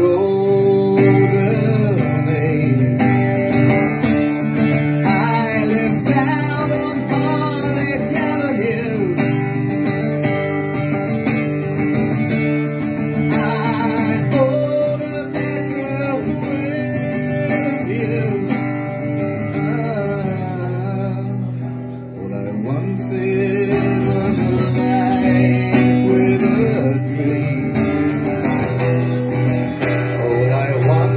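A man singing while strumming an acoustic guitar in a live performance.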